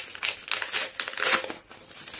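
A folded paper envelope being unfolded and opened by hand: irregular crinkling and rustling of paper.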